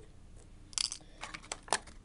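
Clear plastic blister packaging crinkling and clicking as it is handled: a short crackle a little under a second in, then several sharp clicks.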